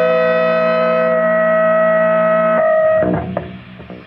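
Punk rock with a distorted electric guitar holding one sustained chord, which breaks off about three seconds in. After it, the sound drops to faint ringing and a few scrapes.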